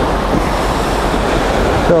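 Small sea waves breaking and washing up a sandy shore, a steady rushing surf, with wind rumbling on the microphone.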